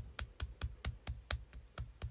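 One person clapping hands in a steady quick rhythm, about four to five claps a second.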